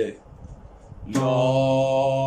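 A man sings one long, steady held note on the syllable "la", starting about a second in. It is a breath-control singing exercise on the first note of the Ajam scale.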